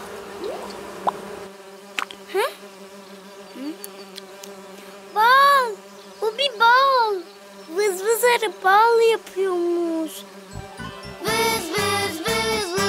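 Cartoon sound effect of bees buzzing around a hive: a steady low drone, with a few short rising-and-falling sing-song calls in the middle. Cheerful music starts near the end.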